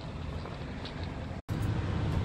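Steady low vehicle rumble, with a few faint light ticks in the first second. The sound drops out for an instant about one and a half seconds in and returns slightly louder.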